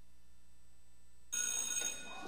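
A faint steady hum, then, past the middle, a brief telephone ring made of several steady high tones.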